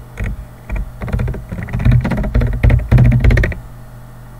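Typing on a computer keyboard: a quick, uneven run of key clicks that stops about half a second before the end.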